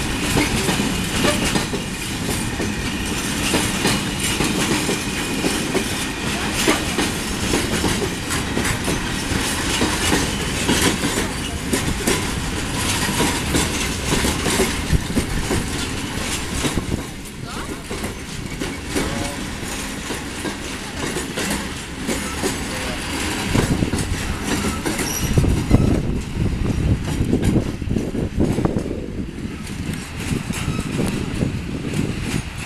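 Freight container wagons rolling past close by, their wheels clattering continuously over the rail joints. The sound dips slightly in the middle and swells again with a deeper rumble near the end.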